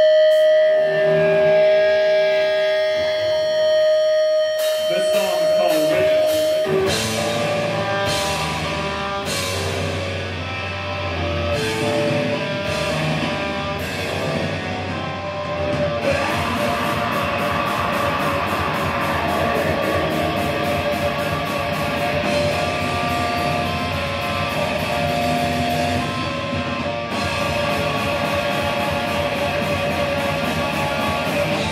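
Live heavy metal band with distorted electric guitars, bass and drums. It opens on a long held, ringing note, drums and cymbal strikes come in after about six seconds, and the full band plays densely from about halfway through.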